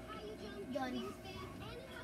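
Indistinct background voices, children talking, over a faint steady hum.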